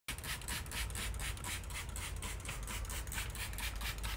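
Hand trigger spray bottle squirting water onto a glass window in rapid, evenly spaced hissing bursts, several a second.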